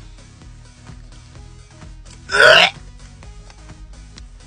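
A man gags once, short and loud, about two and a half seconds in, on a mouthful of canned sardine. Quiet background music plays throughout.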